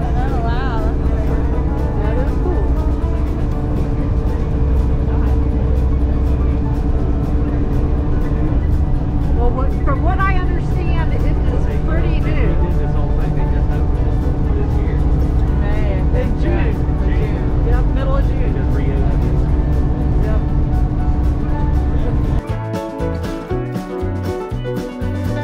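Cog railway railcar running, a steady low rumble with a constant droning hum, heard from inside the passenger car with faint passenger chatter. Near the end upbeat music cuts in over it.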